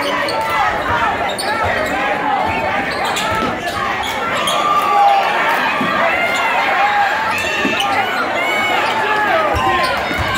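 Basketball game sounds on a hardwood gym court: the ball bouncing as it is dribbled, sneakers squeaking, and crowd and player voices throughout.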